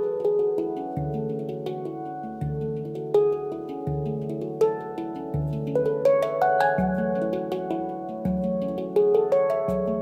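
Ayasa handpan in an F#3 Low Pygmy tuning played with the fingers: a low bass note struck about every second and a half under a flow of quicker, higher ringing notes, each note sustaining into the next.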